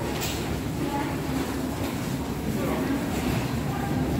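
Steady low hum in a large hall, with scattered voices of people passing.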